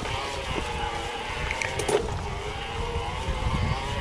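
Mountain bike riding over a dirt forest singletrack: a steady low rumble from the tyres on the trail and wind on the microphone, with a steady slightly wavering whine over it. There is a single sharp knock from the bike about two seconds in.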